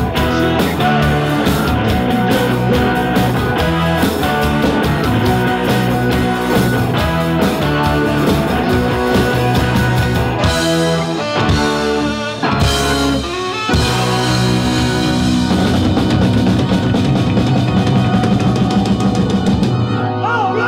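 Rock band playing live, without vocals: drum kit, bass, electric guitar and keyboards. Around the middle the groove breaks into a few short, separated hits, then a long sustained chord fills the last seconds.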